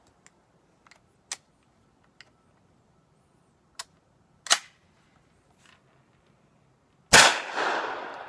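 Several small metallic clicks and clacks as the Chiappa M1-9 carbine's action is worked by hand to clear a failure to feed. About seven seconds in comes a single 9mm shot, the loudest sound, whose echo fades away.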